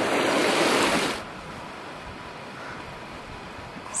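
Mountain stream rushing over rocks, a loud steady rush that cuts off suddenly about a second in, leaving a much fainter steady hiss of open-air wind.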